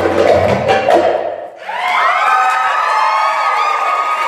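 Percussion-driven belly dance music stops about a second and a half in. The audience then cheers, with several high voices held over a crowd noise.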